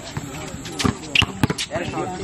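A basketball bouncing on a hard court during a pickup game, with a few sharp bounces about a second in. Players' voices shout in the background.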